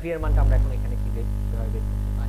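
Loud electrical mains hum, a steady low buzz that comes in suddenly just after the start and is loudest for its first half second, with faint speech under it.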